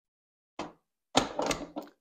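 Metal bread pan being lowered into a bread machine and seated: a light knock just past half a second, then a louder run of clunks and clatter as it settles into place.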